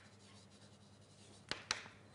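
Writing on a lecture board: faint scratching strokes, then two sharp taps about one and a half seconds in.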